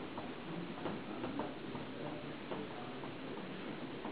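Small porcelain teaware clicking lightly against itself and the tea tray as it is handled: a run of short, irregular clinks over a faint room murmur.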